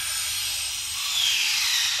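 A loud, steady high-pitched hiss with a faint whistle that falls in pitch during the second half.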